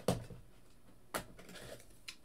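Two short, sharp taps about a second apart as a trading card is handled and set down on a table.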